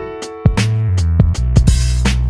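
Background music with a drum beat over held bass notes.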